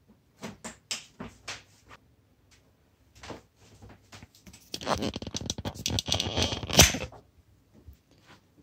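Handling noise as a bare LCD glass panel is set onto a TV's backlight frame: a few light clicks and taps in the first second and a half and another a little later, then about two seconds of dense rustling and scraping with a sharp knock near the end.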